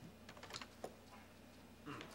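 Faint, sparse clicks of a computer keyboard being typed on, a few scattered taps against quiet office room tone.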